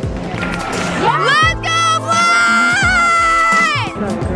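A spectator's long, high-pitched cheering 'woo'. It rises about a second in, is held for nearly three seconds with a slight waver, and falls off near the end.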